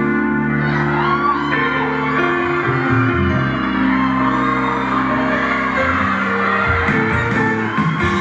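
Live band music in an instrumental passage of a ballad, with long held notes and audience shouts over it. Percussion strokes start near the end.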